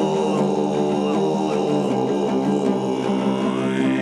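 Altai kai throat singing: a deep, steady drone voice carrying a thin, high whistled overtone, with an overtone sliding upward near the end, over long-necked plucked lutes (topshur).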